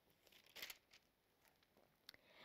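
Faint rustle of thin Bible pages being handled and smoothed flat, one short brush of paper a little over half a second in, otherwise near silence.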